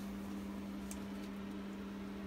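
A steady, low machine hum on one constant pitch, with a couple of faint ticks.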